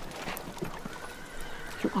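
A horse in the background of a street scene, its hooves clopping and a whinny, heard faintly between lines of dialogue.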